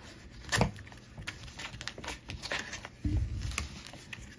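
A folding knife cutting through blue painter's tape wrapped around a card holder, with paper rustling and small scrapes and clicks as the package and note are handled. A sharp rip comes about half a second in, and a louder rustle about three seconds in.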